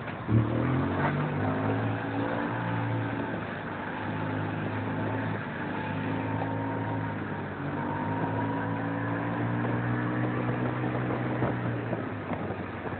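Vehicle engine running steadily at low road speed, its note shifting a little in pitch, with a sharp thump about half a second in.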